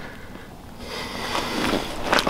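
Soft rustling of gloves and clothing as fishing line is pulled up hand over hand through an ice hole, swelling into a faint hiss about a second in.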